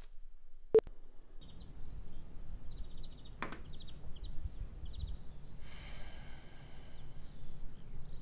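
Quiet room tone with a low steady rumble and faint high chirps. A sharp click comes just under a second in, a second click at about three and a half seconds, and a brief rustle around six seconds.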